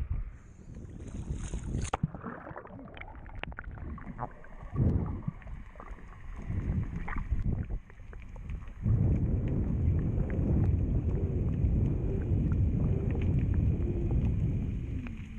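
Water splashing at the waterline as a freediver ducks under. Then muffled underwater water noise rushes past the camera as he strokes downward, turning into a steady, louder low rumble about nine seconds in.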